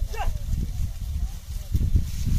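Bullock cart loaded with sugarcane moving across a stubble field: low, uneven rumbling with a couple of knocks near the end. A short falling vocal call comes just after the start.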